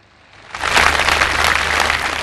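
A large audience breaking into applause about half a second in: many hands clapping at once, dense and sustained.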